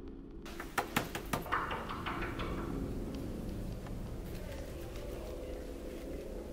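A few sharp clicks or knocks in quick succession about a second in, then a brief hiss, over a steady low hum.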